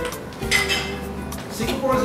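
Cutlery and dishes clinking, with steady background music underneath.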